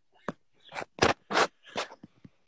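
Breathy, unvoiced laughter: about five short puffs of breath in quick succession.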